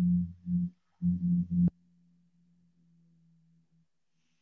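A low-pitched steady hum, loud and switching on and off in three short bursts, cutting off abruptly under halfway through, then continuing faintly until near the end.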